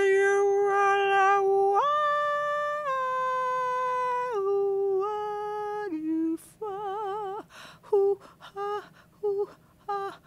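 A wordless singing voice holding long, steady notes, stepping up and then back down in pitch. About seven seconds in it gives a short wavering note, then breaks into a run of short clipped notes.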